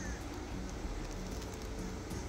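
Steady outdoor background noise, mostly a low rumble, with a faint short high chirp at the start.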